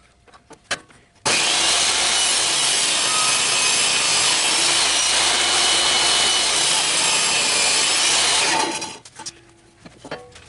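Table saw cutting through a block of wood, its low-set blade taking a long strip off the block. The sound starts suddenly about a second in, runs loud and steady for about seven seconds, and dies away near the end.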